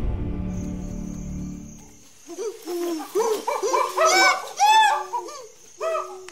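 Background music fading out, then a series of hooting ape calls. Each hoot arches up and down in pitch, and the calls climb higher and louder to a peak about four to five seconds in.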